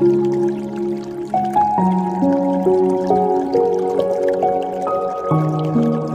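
Slow, calm piano music with held notes changing every second or so, and the sound of dripping water mixed in underneath.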